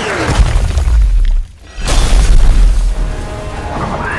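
Animated battle sound effects over music: a quick falling whistle at the start, then two heavy booming impacts, the second starting about two seconds in.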